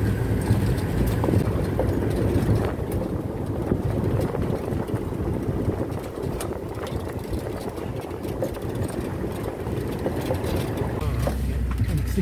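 Steady low rumble of a moving vehicle, engine and road noise heard from inside, with a few light knocks.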